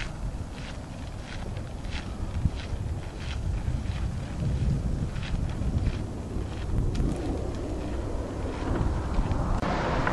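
Wind buffeting the microphone in a steady low rumble, over footsteps crunching on gravel at a walking pace, about one and a half steps a second, growing fainter through the middle of the stretch. Just before the end the sound cuts abruptly to a different outdoor background.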